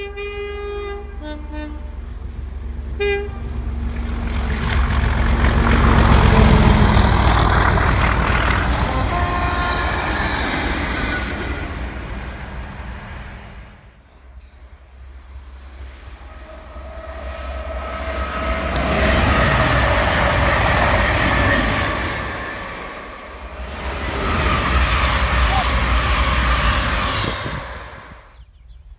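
Class 37 diesel locomotives sounding the horn, with a short second blast about three seconds in. They then pass with loud engine and wheel noise that builds to a peak about six seconds in and fades away. After a cut, more trains pass in two further loud spells.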